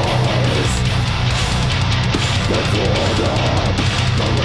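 Live heavy metal band playing loud, dense distorted electric guitars over bass and drums.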